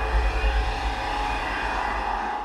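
An outro sound effect: a steady rushing noise with a deep rumble, engine-like, that began abruptly just after the last words.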